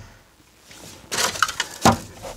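Rustling and clatter of plant cuttings and a small plastic nursery pot being handled on a plastic potting tray. It starts about halfway in and ends with a sharp knock near the end as something is set down.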